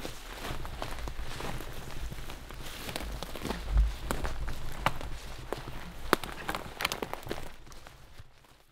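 Footsteps of a hiker walking through brush and forest floor, with irregular sharp clicks and knocks from a trekking pole and a loaded backpack. There is a heavier low thump a little under four seconds in, and the sound fades out near the end.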